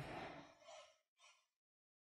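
Near silence in a pause between a man's sentences: a faint breath in the first second and a half, then nothing.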